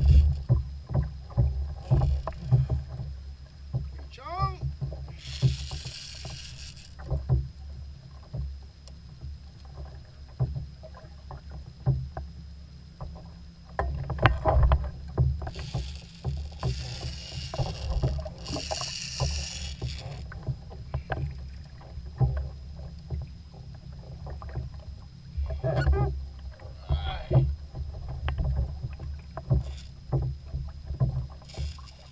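Low rumble of water and wind around a fishing kayak at sea, with frequent small clicks and knocks as a rod and reel are handled. Bursts of hiss come twice, about six seconds in and again from about sixteen to twenty seconds.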